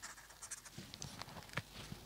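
Felt-tip marker writing on paper: faint, short scratchy strokes.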